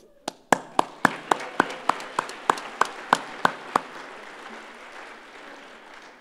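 Audience applauding, with one close pair of hands clapping loudly and steadily at about three to four claps a second over the first few seconds; the applause dies away near the end.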